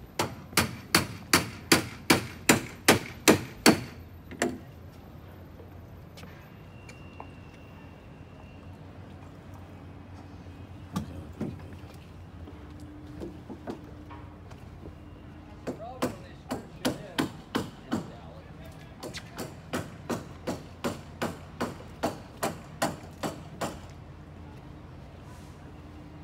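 Hammer blows in quick, even runs of about three a second: a run of a dozen at the start, a short run about two-thirds of the way in, and a longer run near the end.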